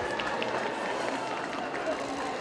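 Crowd of onlookers lining the street: many voices talking and cheering at once in a steady wash of noise, with a few sharp claps or shouts standing out.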